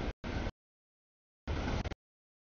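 Freight train rumbling past, heard only in three short chunks that cut in and out abruptly to dead silence, the sign of audio dropouts in the camera's stream.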